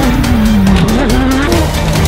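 Off-road race car engine revving over a loud music track: its pitch drops through the first second, then climbs again in the second half.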